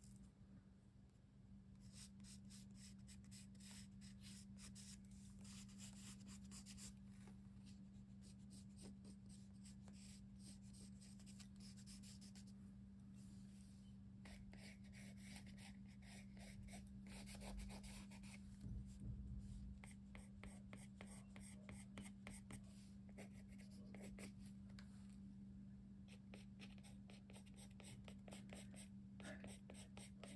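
Faint pencil scratching on an acrylic-painted paper page in many quick, short strokes, with brief pauses, over a steady low hum.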